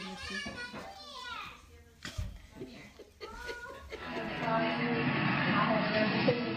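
A small child's voice babbling and squealing, with a single thump about two seconds in. From about four seconds a louder, busier mix of sound takes over.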